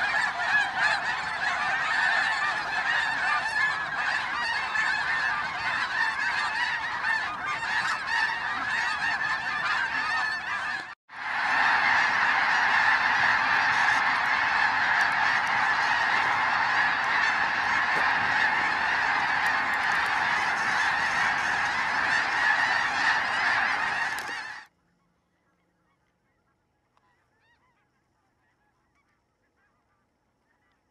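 A large flock of snow geese calling in flight, a dense unbroken chorus of honks. It drops out for an instant about eleven seconds in, resumes, and cuts off suddenly near the end.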